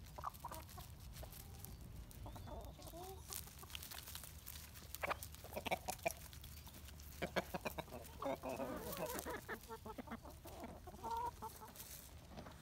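Backyard hens clucking softly and intermittently, with scattered sharp clicks and scuffs close by, busiest in the middle and latter part, over a low steady rumble.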